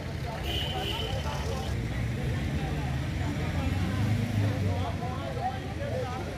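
Low rumble of a vehicle on the road, swelling about four seconds in, under a murmur of crowd voices.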